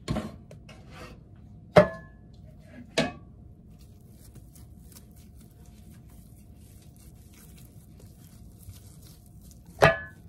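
Metal loaf pans knocking against the counter: four sharp clanks, each with a short metallic ring, the loudest about two seconds in and just before the end.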